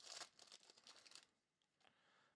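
Foil trading-card pack wrapper crinkling faintly as it is torn open, stopping a little over a second in.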